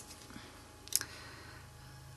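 Quiet handling of craft tools on a paper-covered tabletop, with one light click about a second in, over a faint steady hum.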